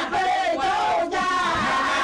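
A crowd of women calling out together in high, drawn-out, wavering voices.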